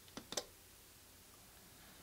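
Wyze smart plug switched off with its side button: two quick, faint clicks from the button and the relay inside.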